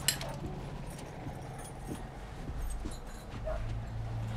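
A sharp click as a door latch is turned, then faint movements in a small room over a low steady hum that grows a little louder near the end.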